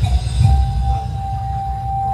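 A single steady ringing tone that starts about half a second in and holds for around two seconds, over a loud low rumble.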